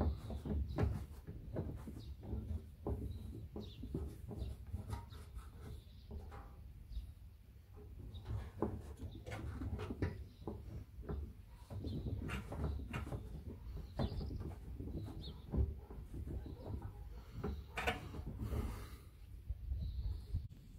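A microfiber towel being wiped over a painted car fender panel to take isopropyl alcohol off the freshly polished paint. It makes soft, irregular rubbing and handling noises with scattered small knocks over a steady low rumble.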